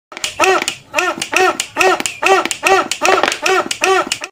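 A homemade plastic-bottle balloon pump played as a toy trumpet: about eight short honking squeaks, each rising and then falling in pitch, a little over two a second, as the bottle is squeezed.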